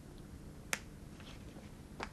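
A single short, sharp click about three-quarters of a second in, with a couple of fainter ticks after it, over a faint steady room hum.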